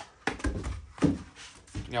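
Handling noise as a new ignition distributor is taken out of its cardboard box: short scuffs and clicks of packaging, with one sharp knock about a second in.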